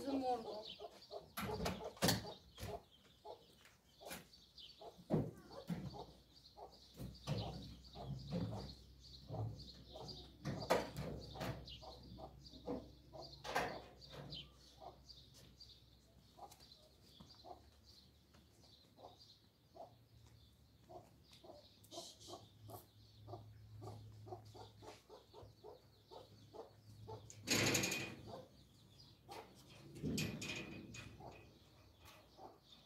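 Chickens clucking in the background amid scattered clicks and knocks as a car door is opened and the bonnet raised and worked under, with a low steady hum through the middle and a louder clatter near the end.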